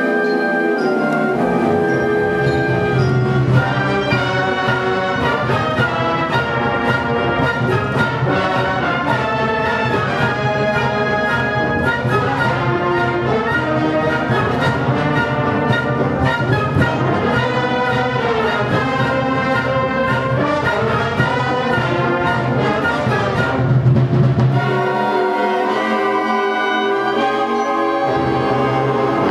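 Student concert band playing full ensemble: flutes, brass and low winds together. The low parts come in about a second in and fall away near the end, leaving a lighter texture.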